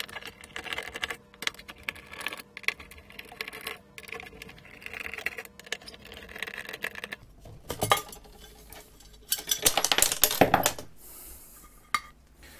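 Metallic clicks and clinks of small screws being worked out with a screwdriver and dropped. Near the end comes a louder run of clatter as the machined aluminium LCD shield is lifted off.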